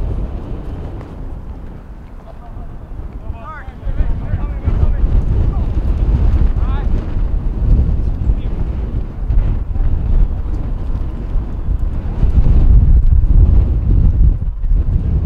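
Wind buffeting the microphone: a loud, low rumble that dips early on and swells again from about four seconds in. Faint distant shouts from the field come through the wind a few seconds in.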